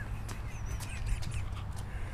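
Scattered light knocks and clicks at an uneven pace over a low rumble of wind on the microphone, with one faint high chirp a little before the middle.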